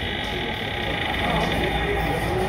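Light-and-sound Halloween haunted house decoration playing its sound track, a steady low mix of voice and music, under the noise of a busy shop.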